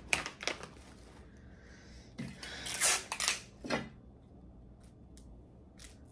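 Hands handling packaged gift items and craft materials: light clicks and taps, with a louder crinkly rustle about three seconds in.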